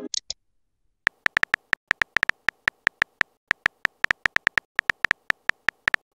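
Simulated phone-keyboard key-tap sound effect from a texting-story app: a fast, uneven run of short, high clicks as a message is typed, starting about a second in.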